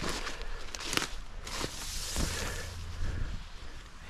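Footsteps in wet fallen leaf litter: a few separate steps, with a stretch of rustling in the middle.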